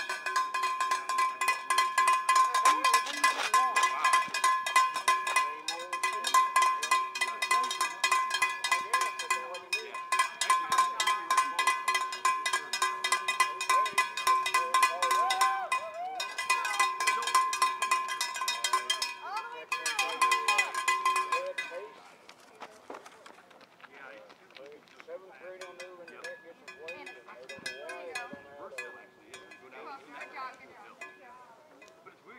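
A cowbell rung rapidly and without let-up, a fast stream of metallic strikes on a steady ringing pitch, stopping abruptly about 22 seconds in.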